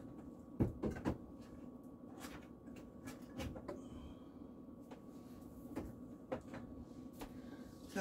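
Scattered light clicks and knocks of things being handled in a kitchen, with two louder knocks about a second in.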